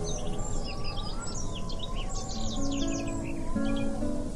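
Guitar music with birdsong mixed over it: a steady stream of quick, high chirping bird calls throughout, and held low notes coming in more strongly about two and a half seconds in.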